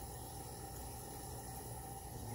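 Faint steady background hiss and hum, with no distinct events.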